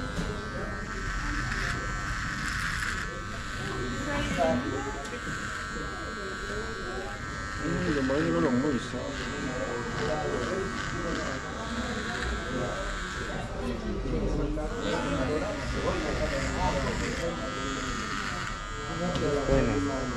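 Cordless electric hair clipper buzzing steadily as it trims a beard along the jaw, upper lip and neck, its tone brightening now and then as the blades press into the stubble. Voices chatter underneath.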